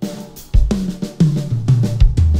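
Pearl Decade Maple drum kit with six-ply maple shells being played: kick drum, snare and cymbal strokes, with a run of drum hits that steps down in pitch over the second half.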